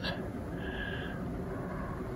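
Steady low background hum and hiss, with a faint brief high tone about half a second in.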